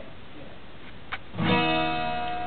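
A guitar chord struck once about one and a half seconds in and left ringing, after a short stretch of quiet room hiss with a faint click.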